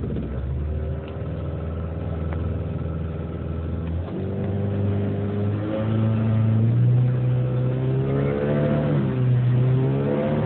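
Small tiller outboard motor speeding up as the throttle is opened: its pitch steps up about four seconds in and keeps climbing, getting louder, with a brief dip near the end.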